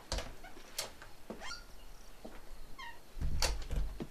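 An interior wooden door creaking on its hinges, with a few sharp knocks and short squeaks, then a louder low thud about three seconds in.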